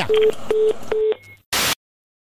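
Telephone busy tone at the end of a phone call that has been hung up: three short beeps of one low pitch in quick succession, followed by a brief burst of hiss.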